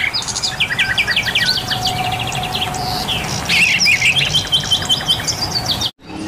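Several songbirds chirping and trilling in quick runs of short repeated notes, with a faint steady tone underneath from about two seconds in. The sound cuts off abruptly just before the end.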